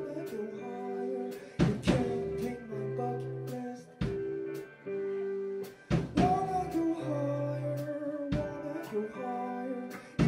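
Live band music: an electric guitar and bass hold ringing chords while drums strike heavy accents every couple of seconds, with a voice singing over them.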